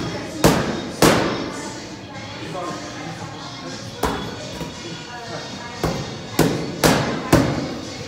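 Boxing gloves hitting focus mitts: seven sharp smacks with a short echo after each, two at the start, one about four seconds in, then four in quick succession near the end.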